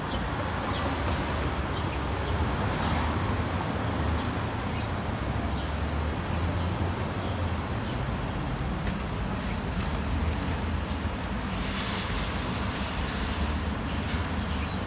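Steady urban road traffic noise with a deep low rumble, and a few faint clicks in the second half.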